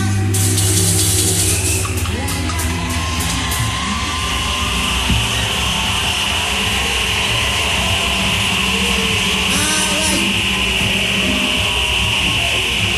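Live band music from an open-air concert: a held low bass note and cymbal washes in the first few seconds, then a steady high sustained sound over quieter playing as the reggae number winds down.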